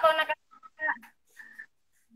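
Speech over a video call: the tail of one utterance at the start, then two short, faint snatches of voice.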